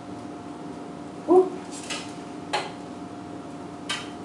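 Thin midollino (rattan core) sticks knocking together as a bundle is pulled apart: a few scattered sharp clicks and a light rustle.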